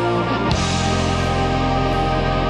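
Live progressive rock band playing an instrumental passage: electric guitar and sustained chords over a drum kit, with a change of chord and a drum hit about half a second in.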